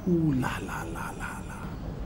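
A man's wordless vocal sound: a drawn-out exclamation falling in pitch, then a quick run of short, evenly spaced bursts.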